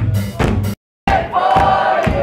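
Live band music with drum hits, cutting out completely for a split moment just under a second in, then a concert crowd cheering and shouting.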